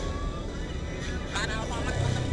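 Steady low rumble of road traffic, with a motorcycle engine coming up close near the end, and a faint voice in the background.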